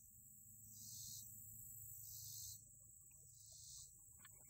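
Near silence with a faint, steady high insect chorus that swells and fades in slow regular pulses, about every second and a half. A few faint small clicks come near the end.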